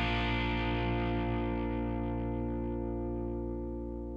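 Closing chord of a rock song: a distorted electric guitar chord, with the band's low end beneath it, left ringing and slowly fading as its brightness dies away.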